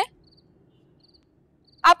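Faint cricket chirping: short, high trills repeating about every half second in a quiet background.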